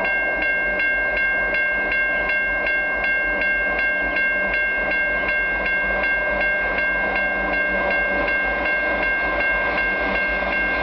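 Railway level-crossing warning bell ringing with rapid, evenly spaced dings, signalling an approaching train, over a steady low rumble.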